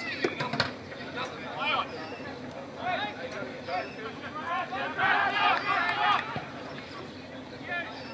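Shouts and calls from several players and spectators during an Australian rules football game, busiest about five to six seconds in, with a few sharp knocks near the start.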